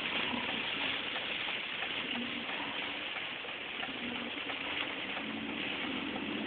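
Heavy rain on a moving car, heard from inside the cabin together with the wet road noise of the tyres: a steady, even rushing with no breaks.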